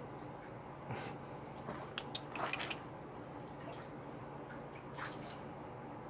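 A few small water splashes and drips from a raccoon moving about in a shallow pool. The clearest cluster comes about two seconds in, with another near five seconds. A short laugh comes about a second in.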